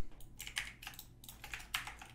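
Computer keyboard keys tapped as shortcuts are entered, a string of light, irregular clicks.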